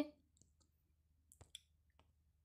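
Near silence with a few short, faint clicks, two of them close together about a second and a half in.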